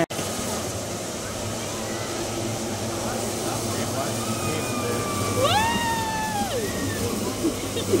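A high voice shouting one long held call about five and a half seconds in, rising, holding and then dropping away, over steady outdoor background noise.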